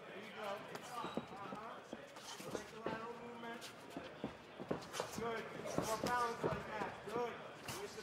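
Faint, indistinct voices calling out, with scattered sharp thuds of strikes and footwork in the cage.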